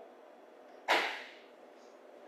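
A single sharp knock about a second in, dying away over half a second, against faint room tone.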